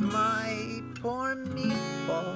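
Acoustic guitar strummed in steady chords, with a woman's voice singing a melody over it.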